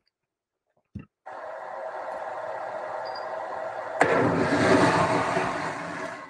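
Lithium-ion cells in a thermal-runaway-shielded battery pack venting during a thermal runaway test: a click about a second in, a steady hiss, then a sudden louder rush of venting about four seconds in that fades toward the end. The venting is contained, with smoke but no fire or explosion.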